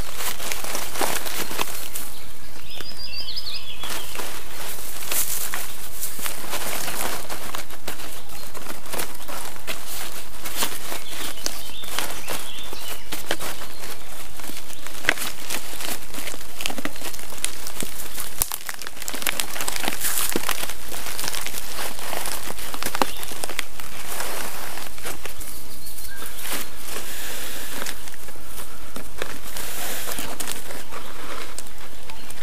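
A large sheet of birch bark crackling and rustling as it is rolled up by hand, with a steady run of small crackles and scrapes. A bird chirps briefly about three seconds in.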